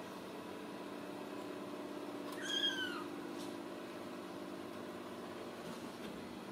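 A Ragdoll kitten gives a single high meow, about half a second long, rising then falling in pitch, a couple of seconds in. A steady low hum runs underneath.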